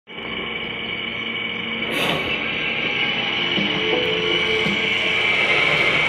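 Television soundtrack music heard through the TV's speaker: a steady droning bed with a high whine, a click about two seconds in, and a few low notes from about three and a half seconds.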